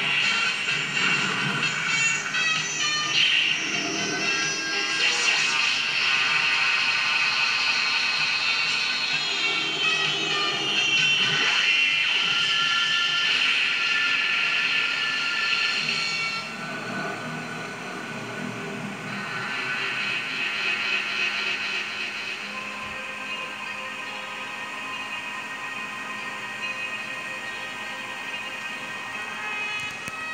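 Tokusatsu battle soundtrack playing from a television: music with sound effects, including several falling whistling tones over the first dozen seconds. It grows quieter and steadier about halfway through.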